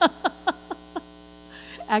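A woman laughs into a handheld microphone, a run of about five short 'ha's that tail off over the first second. A steady electrical hum from the sound system runs underneath.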